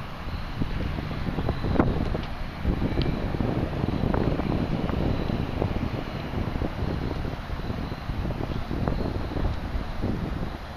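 Wind blowing across the microphone: an uneven low rumble that swells and fades.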